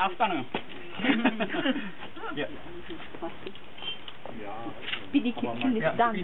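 People talking, with short light clacks of firebricks being set down on one another as a kiln wall is stacked by hand.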